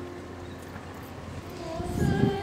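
Open-air crowd ambience: a low rumble with faint voices and small knocks. Near the end a held musical note comes in as music begins.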